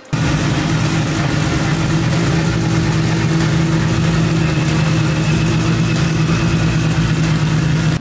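Modified race-car engine running at a steady idle, loud and even, with no revving. A faint high whine joins about three seconds in.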